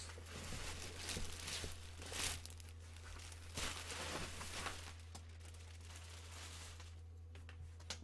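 Clear plastic bag crinkling and rustling as goalie pads are pulled out of it inside a cardboard box, busiest in the first five seconds and quieter after that.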